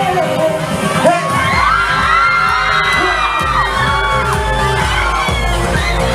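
Audience cheering and screaming over live pop music, many high voices overlapping for a few seconds. A held sung note ends right at the start, and a pulsing bass beat comes in about a second and a half in.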